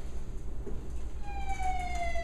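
A siren with one long tone gliding slowly down in pitch, starting a little past a second in, over a steady low hum.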